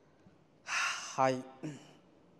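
A man takes a loud, audible breath lasting about half a second, then makes two short voiced sounds, like clipped syllables.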